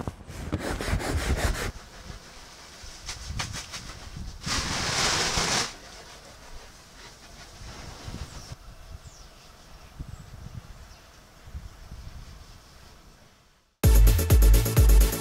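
Wind buffeting the microphone on a moored yacht's deck: an uneven rumble with a louder hissing gust about four and a half seconds in, dying away near the end.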